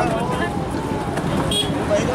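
Voices talking, not close to the microphone, over a steady low outdoor noise bed.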